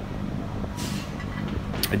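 Steady low hum, with a short breath about a second in and a small mouth click just before speech resumes.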